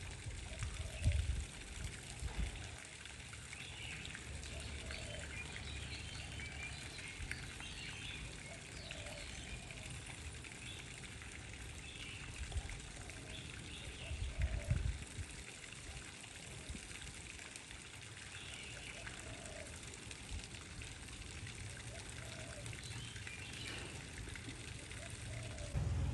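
Quiet ambience beside an outdoor swimming pool: steady trickling of pool water, with scattered faint bird chirps and a couple of brief low rumbles, about a second in and again midway.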